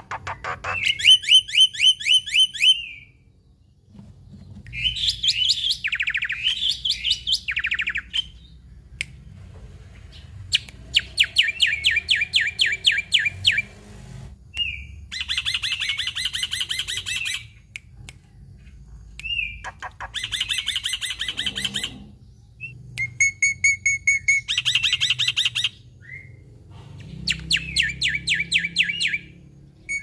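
Black-winged myna (jalak putih) singing in loud bursts of fast repeated notes, each burst two to three seconds long, about seven of them with short pauses between.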